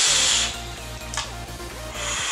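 A long hissing draw on a vape: air rushing through the atomizer as the coil fires. It stops about half a second in, leaving a quieter stretch with one short click about a second in.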